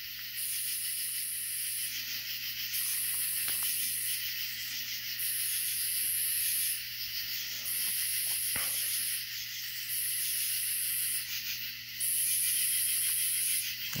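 Night insects calling: a very high, rasping buzz that comes in regular bursts of about a second and a half, every two seconds or so, over a steady background of insect hiss.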